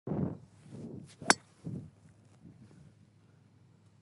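A golf driver striking a teed ball: one sharp, ringing metallic crack about a second and a quarter in.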